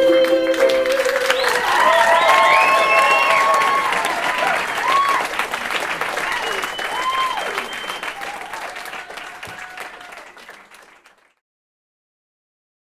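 A held final chord of the song ends in the first second, then a small audience claps and cheers, with several whoops rising and falling above the clapping. The applause slowly fades and stops abruptly about a second before the end.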